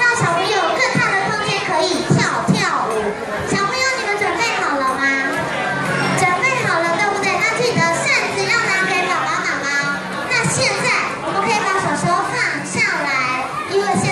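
Many young children shouting and chattering together, with music playing underneath.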